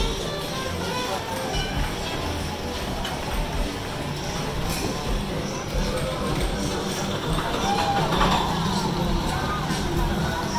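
Background music mixed with the voices of people talking around the microphone.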